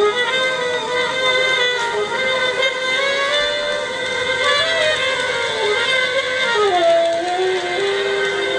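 Saxophone playing long held tones in a free improvisation, layered with live electronics into several overlapping pitches. The pitches slide slowly and drop lower near the end.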